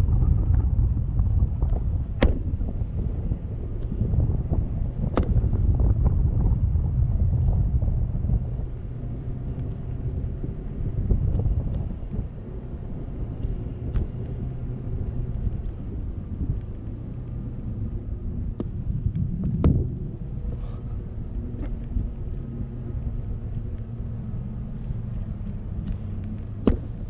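Wind buffeting the microphone on a parasail rig in flight: a steady low rumble that eases after about eight seconds, with a few sharp clicks scattered through it.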